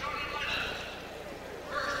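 Faint arena crowd murmur under a steady low hum, with a man's voice coming in near the end.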